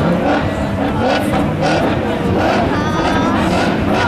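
Stock-car engines revving up and down over loud outdoor background noise, with voices talking.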